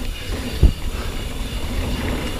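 Ibis Ripley 29er mountain bike rolling fast on dirt singletrack: a steady low rumble from its knobby tyres on the trail, with one sharp thump a little over half a second in as the bike hits a bump.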